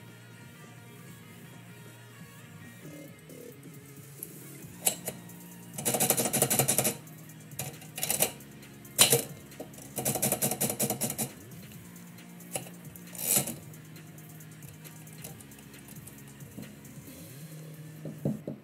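Manual typewriter keys striking: two bursts of rapid typing near the middle, with single sharp key strikes around them, over soft background music.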